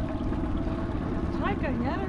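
Small boat's outboard motor running steadily, a constant low hum.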